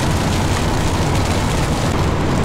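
Wind buffeting the camera's microphone: a loud, steady low rumble with a hiss above it and no clear pitch.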